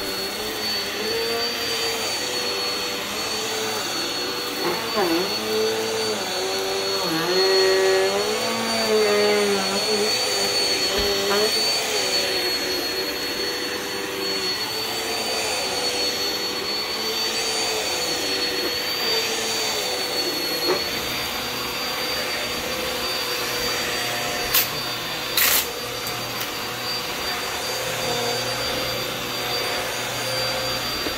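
Bissell bagless upright vacuum cleaner running steadily with a high motor whine as it is pushed over a shag rug and hard floor, picking up glitter and debris. Two sharp clicks come near the end.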